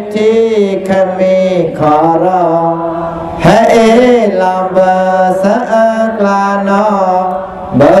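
A solo voice singing a melodic Buddhist Dhamma chant in long gliding phrases over a steady low drone note.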